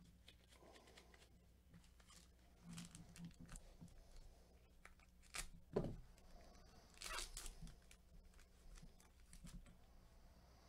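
Faint tearing and crinkling of a foil trading-card pack wrapper as it is pulled open, in a few short bursts, the loudest a little past halfway.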